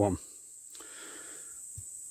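Quiet outdoor background with a steady high-pitched insect drone.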